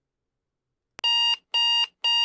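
Electronic alarm clock beeping: after a second of silence, a click and then two short, identical beeps about half a second apart.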